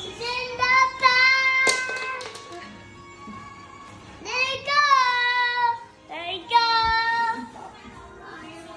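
A young girl singing long, high held notes in three phrases, with quieter gaps between them.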